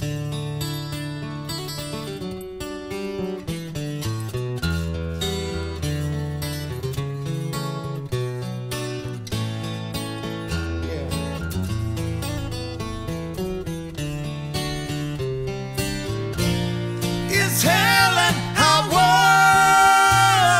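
Steel-string acoustic guitar playing an instrumental break, with moving bass notes under picked chords. About three-quarters of the way through, a man's singing voice comes in with long, wavering held notes, louder than the guitar.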